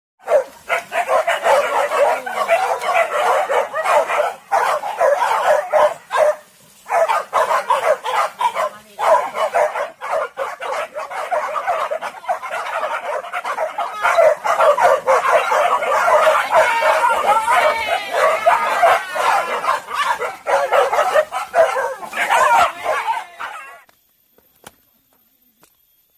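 A pack of hunting dogs barking and yelping almost without pause, with short breaks about six and a half and nine seconds in; the din cuts off suddenly at the end.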